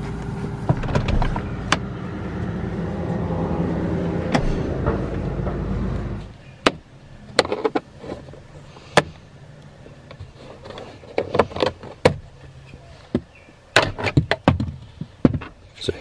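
A steady low hum that stops abruptly about six seconds in, then a series of sharp clicks and plastic snaps as a screwdriver pries up the plastic bolt covers on the seat track.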